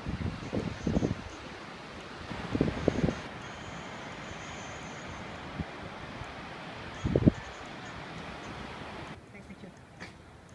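Coastal wind buffeting the microphone in low gusts about a second in, near three seconds and around seven seconds, over a steady hiss of wind and surf. The wind noise drops away near the end.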